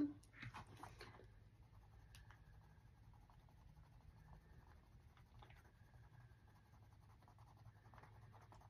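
Faint scratching of a crayon colouring in small shapes on a paper chart. There are a few louder handling sounds in the first second.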